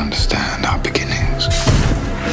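Dark trailer score with a low sustained bed, a whispered voice over it, and a loud burst of hiss about one and a half seconds in.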